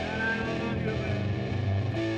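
Live rock band jamming, with electric guitar; one note bends up and back down near the start.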